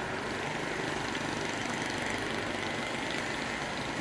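A motor vehicle engine running steadily amid street traffic noise, with no sudden events.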